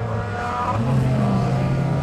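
Autocross race cars' engines running on a dirt track, with the engine note stepping up in pitch about a second in as a car accelerates.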